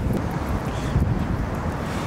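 Wind buffeting the microphone: a steady low rumble of wind noise.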